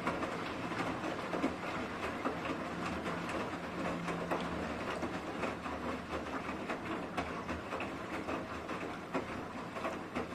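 Bosch Serie 8 front-loading washing machine in its rinse, the drum tumbling laundry through the water: continual sloshing and splashing with many small knocks over a faint steady low hum.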